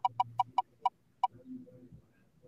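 Ticking sound effect of an online spinner wheel slowing down: six short, pitched ticks that spread further and further apart and stop about a second and a quarter in as the wheel comes to rest.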